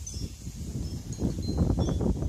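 Low rumbling wind noise buffeting the phone's microphone outdoors, growing louder in the second half, with a few faint high tinkling tones over it.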